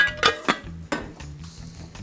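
Enamelled steel saucepan and its lid clanking as they are handled and set down: a few sharp metallic knocks in the first second, the first ones ringing briefly. Background music plays underneath.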